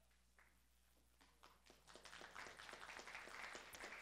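Audience applauding. Near silence at first, then scattered claps about a second in that build into steady applause.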